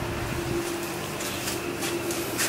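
Large Océ photocopier running in its warm-up cycle: a steady machine hum with one held tone over a soft whirr.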